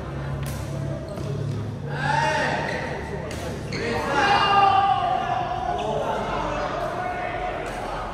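Badminton rally: a few sharp cracks of rackets striking the shuttlecock, a few seconds apart, echoing in a large hall.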